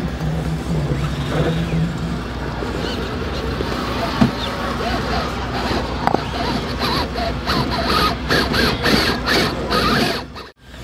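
Axial SCX6 1/6-scale electric RC rock crawler working over rocks, its motor and geared drivetrain whining under load. From about halfway there are repeated clicks and scrapes of the tyres and chassis on stone.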